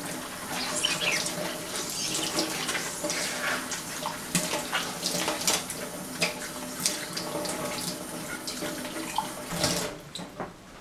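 Water running from a tap into a sink, with small knocks and clinks as a glass is washed under it by hand. The water shuts off abruptly just before the end.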